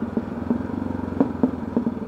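Enduro motorcycle engine running steadily while the bike rides along, heard from the rider's seat.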